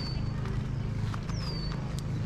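A small bird calling twice with a short, high whistle that slides down in pitch, over a steady low rumble.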